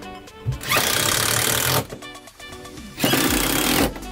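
Two bursts of a Bosch cordless impact driver running a screw into a gas-strut mounting bracket, each about a second long with a pause between, over background music.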